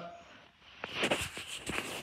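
Rustling and handling noise with a few sharp clicks, starting about a second in, as a plush puppet is handled close to the microphone.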